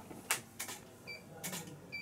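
Camera shutter clicking several times during a studio shoot, with two short high electronic beeps between the clicks.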